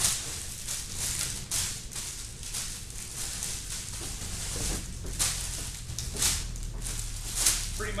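Plastic flower sleeves crinkling and rustling as wrapped bouquets are lifted from a cardboard box and handled, with several louder crackles, over a low steady hum.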